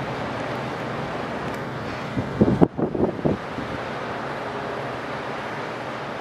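Wind buffeting the camera microphone as a steady rushing noise, with a short cluster of louder thumps about two to three seconds in.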